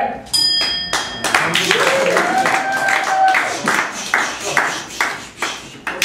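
A short bell-like ring sounds about half a second in. The audience then claps, and one voice shouts a long drawn-out call.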